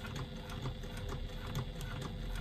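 Domestic sewing machine stitching slowly through faux leather and foam at its longest stitch length, a steady rhythm of about four to five stitches a second.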